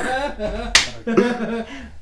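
A man's voice murmuring or half-laughing in a small room, broken by one sharp click, like a finger snap, about three-quarters of a second in.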